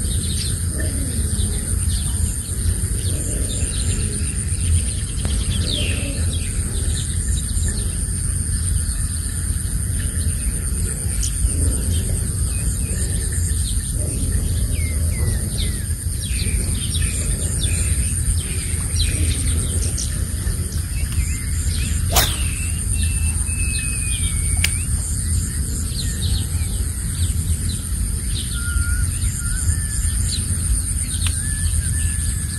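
Birds chirping and calling repeatedly over a steady high drone and a constant low rumble, in open countryside; a single sharp click cuts through about three-quarters of the way in.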